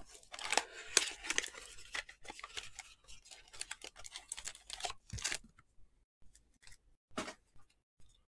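Clear plastic shrink-wrap being torn and peeled off a trading card box: dense crinkling and crackling for about five seconds, then a few scattered crackles.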